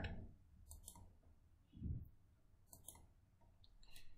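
Faint computer mouse clicks: two quick double clicks about two seconds apart, with a soft low thump between them, while a new blank whiteboard page is opened.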